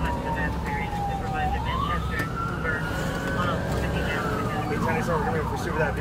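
Police car siren in a slow wail, its pitch falling and rising in long sweeps, switching to a fast yelp near the end. Under it runs the steady rumble of the pursuing cruiser's engine and tyres.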